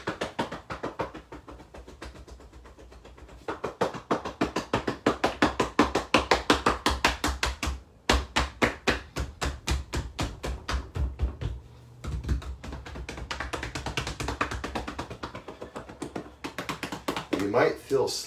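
Rapid hand slaps on the body through clothing, about five or six a second: qigong self-tapping down the back, hips and legs. The tapping is lighter at first and gets louder a few seconds in, with two short pauses.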